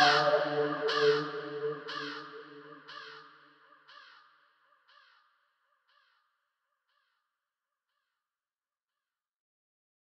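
The end of an instrumental beat: its last sound repeats through an echo about once a second, each repeat fainter, dying away about five seconds in.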